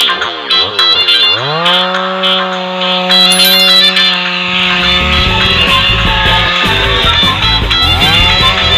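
Two-stroke chainsaw revving up about a second in and holding a steady high pitch at full throttle while cutting through a log. Its pitch dips briefly near the end as it loads in the wood. Background music plays over it.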